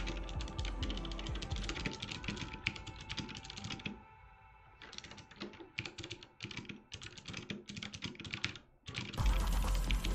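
Rapid typing on a computer keyboard in bursts, with a pause about four seconds in, over quieter background music. The music comes in loud, with heavy bass, about nine seconds in.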